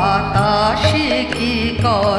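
A woman singing a Bengali song with a wavering voice, over instrumental accompaniment and a steady low drum beat.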